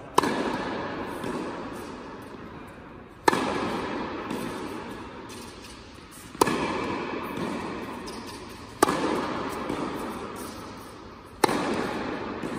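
Tennis racket striking the ball on overhead smashes, five sharp hits two and a half to three seconds apart. Each hit rings on in a long fading echo from the indoor tennis hall.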